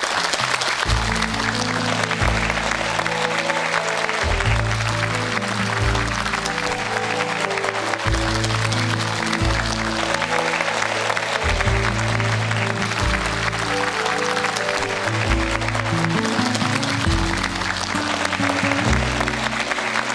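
A large audience applauding steadily over instrumental music. The music comes in about a second in, with held bass notes under a melody.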